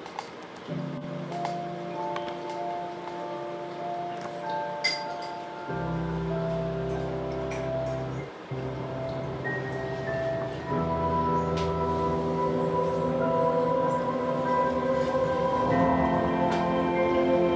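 Samsung QLED TV's first-startup music through its built-in speakers: slow ambient music of sustained, layered notes, growing fuller and louder about six seconds in and again about eleven seconds in.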